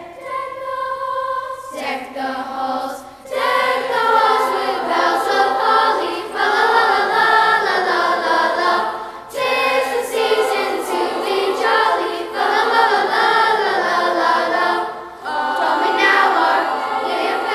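Middle-school choir of boys and girls singing a medley of Christmas carols, in phrases broken by a few brief pauses.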